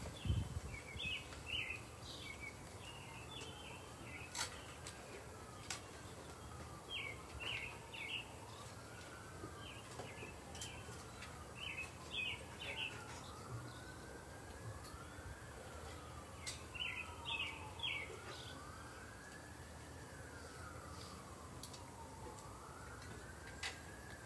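Faint siren of an emergency vehicle wailing, its pitch rising and falling about every two seconds, with birds chirping in short runs over it.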